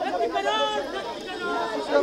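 Voices of a crowd of protesters and police talking over one another at close range.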